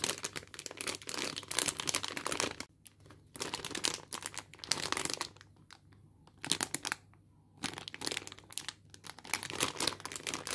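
Plastic candy bag crinkling as fingers squeeze and handle it. The crinkling comes in bursts of a second or two, with short pauses between them.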